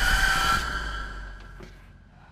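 A horror-style music sting: a bright ringing hit with a low rumble beneath it fades away over about two seconds.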